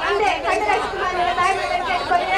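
Crowd chatter: many voices talking and calling out over one another, loud and close.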